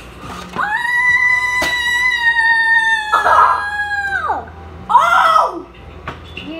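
A child's long, high-pitched squeal held steady for about four seconds, then dropping away, with a shorter cry near the end.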